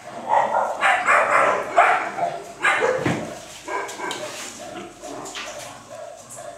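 Dog barking repeatedly, loudest in the first three seconds and fainter after that.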